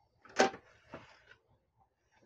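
Plastic and metal body of a partly disassembled HP LaserJet P1102W laser printer knocking as it is handled and shifted: one sharp knock, a softer one about half a second later, then light scraping.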